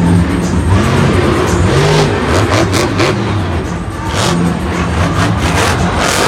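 Monster truck engines revving hard, their pitch rising and falling as the trucks throttle around the arena floor, with the crowd underneath.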